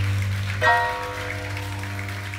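Live samba-jazz band playing the opening of a choro: a held chord over a sustained low bass note, with a fresh chord struck about half a second in.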